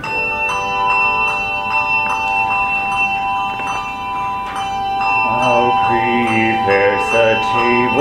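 A handbell choir ringing in an even pulse of about two and a half strokes a second, each stroke leaving long, steady ringing tones that overlap. About five seconds in, a solo voice begins singing over the bells.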